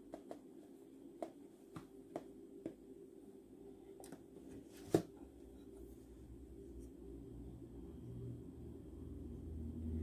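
Faint, irregular taps and clicks of a small metal mesh sieve being tapped and shaken to sift flour into a glass bowl, with one sharper knock about five seconds in, over a steady low hum.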